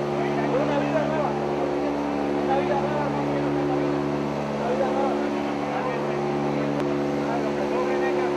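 Steady engine drone made of several held tones, heard from inside a vehicle cabin, with people talking over it.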